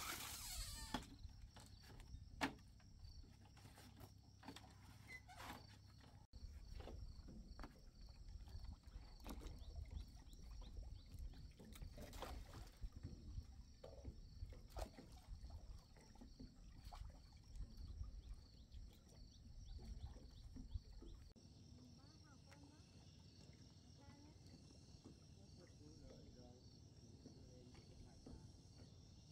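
Quiet lakeside ambience: insects chirping steadily with a regular pulse, scattered light knocks, and a low rumble that drops away about three-quarters of the way through.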